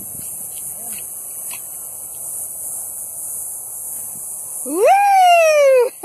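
A person lets out one long wordless whoop near the end, rising sharply and then slowly falling in pitch, over a steady high hiss.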